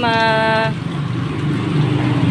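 A voice holds one long vowel for under a second, then water from a tap runs steadily and splashes onto plastic toys and a plastic crate.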